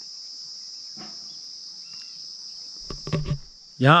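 A steady, high-pitched insect chorus, an unbroken trill. About three seconds in come a few short knocks and rustles, and just before the end a man starts to speak.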